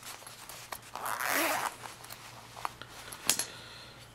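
Zipper of a soft fabric knife case pulled open in one stroke about a second in, then light handling clicks and a sharper click near the end.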